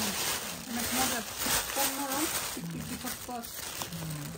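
Thin plastic shopping bag crinkling and rustling as a hand rummages among mangoes inside it, with quieter voices underneath.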